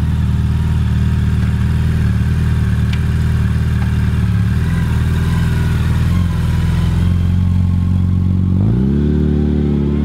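Yamaha FJR1300's inline-four engine idling through Yoshimura R77 slip-on pipes with the baffles removed, then revving up as the bike pulls away near the end.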